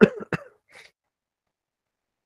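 A man coughs twice in quick succession, then gives a short, faint breath out.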